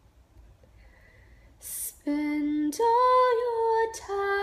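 A woman sings unaccompanied after a short breath in: a held low note, then a step up to a higher held note about a second later.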